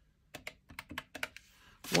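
A quick series of about ten light clicks from the keys of a calculator with round, typewriter-style keycaps being tapped.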